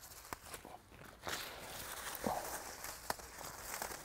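Strawberry plants rustling as the berries are picked by hand, with a few sharp clicks and small snaps scattered through.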